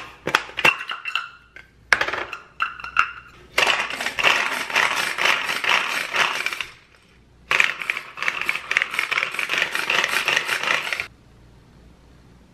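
Garlic cloves clinking into a small clear plastic pull-cord food chopper, with sharp knocks that ring briefly in the bowl. Then come two long stretches of rapid rattling and whirring as the cord is pulled over and over, and the spinning blade chops the garlic against the plastic bowl.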